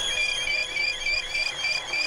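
AudioDesk Vinyl Cleaner Pro running in its cavitation cleaning cycle, with an LP turning between its rollers in the fluid bath. A steady high whine carries an even, high-pitched chirping pulse about four times a second.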